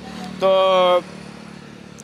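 A man's voice holding one drawn-out syllable for about half a second, then a pause filled by faint, steady noise of a vehicle engine on the road.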